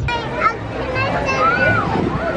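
A young child's high-pitched voice babbling and calling out without clear words, its pitch gliding up and down.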